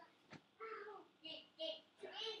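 A boy's voice, quiet, making a few short vocal sounds, with a single click about a third of a second in.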